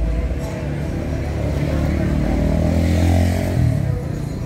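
A car's engine running close by, rising slightly in pitch and getting louder as it accelerates, loudest about three seconds in, then falling away just before the end, over street noise.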